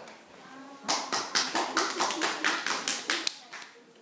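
Hands clapping, about six claps a second, starting about a second in and stopping after a couple of seconds.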